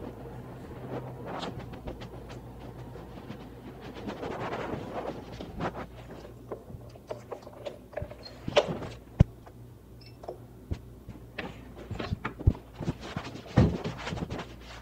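KingSong S18 electric unicycle being ridden slowly: a steady low hum with scattered clicks and rattles. After about eight seconds the clicks and knocks come louder and more often.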